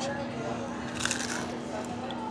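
A single short crunch of biting into a panko-breaded fried onion ring, about halfway through, over a steady low background hum.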